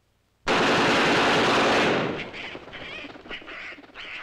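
A sudden loud blast of combat noise about half a second in, dense and unbroken for about a second and a half. It then breaks up into short, ragged bursts as it dies away.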